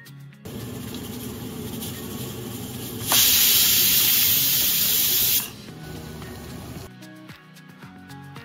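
Steam hissing from the vent pipe of a Pigeon aluminium pressure cooker. About three seconds in, a much louder, sharper hiss of steam lasts about two seconds as the cooker lets off pressure past its weight valve, and then drops back.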